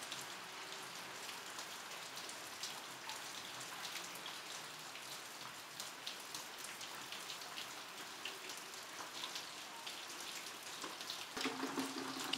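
Faint steady background noise with a light patter of many small ticks, a low steady hum joining near the end.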